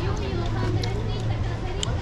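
Street background of people talking in passing, over a steady low hum of traffic, with a few faint ticks.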